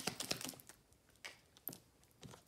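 Tarot cards being handled and laid down on the table: a quick run of light clicks and taps at first, then a few isolated ones.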